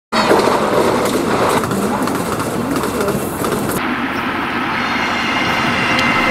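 Loud train noise, a train running on the rails, with an abrupt change in the sound about four seconds in.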